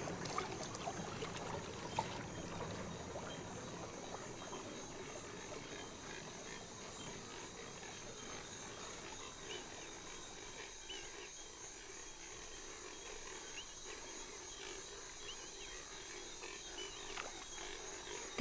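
Faint natural swamp ambience: a low, even hiss with scattered faint chirps and ticks, and one small click about two seconds in.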